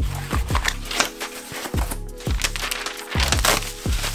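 Background music with a deep bass beat, over the crinkling and rustling of paper and bubble-wrap packaging being pulled off a bike frame.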